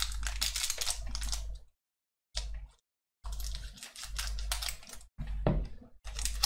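Foil wrapper of a Pokémon booster pack crinkling and crackling as it is pulled and torn open by hand, in several bursts broken by short silent gaps. The pack is stuck and resists opening.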